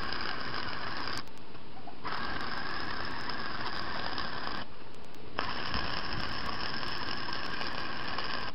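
Arc welding on steel, heard as a steady crackling hiss in three runs. The first run stops about a second in, the second runs from about two seconds to nearly five, and the third starts about five and a half seconds in.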